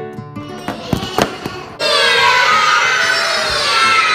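Plucked background music fades out and a few sharp clicks follow. Then, about two seconds in, a loud chorus of young children's voices starts suddenly, all calling out together in unison.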